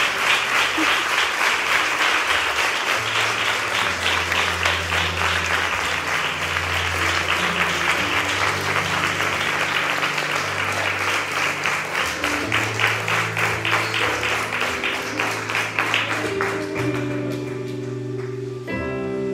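A congregation applauding to the Lord over accompanying music with a moving bass line. The clapping falls into a steady beat, then dies away near the end while the music carries on.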